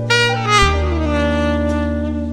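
Tenor saxophone playing a slow jazz ballad melody over a backing track of bass and chords. A new phrase begins right at the start, and the notes slide downward about half a second in.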